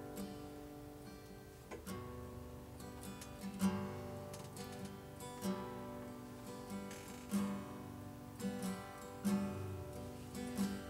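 Steel-string acoustic guitar played live, picked notes and chords ringing, with a firmer strummed chord about every two seconds.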